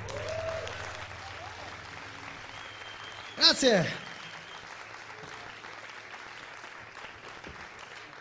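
Audience applause, an even patter throughout, with one loud shout of "yeah!" about three and a half seconds in.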